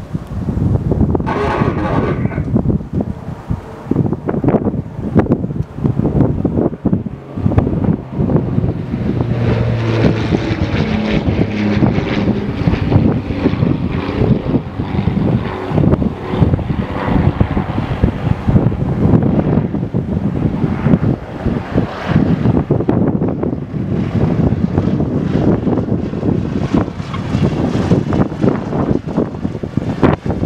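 Harvard 4 trainer's Pratt & Whitney R-1340 nine-cylinder radial engine running at low power as the aircraft comes in to land, touches down and rolls out, with heavy wind buffeting on the microphone.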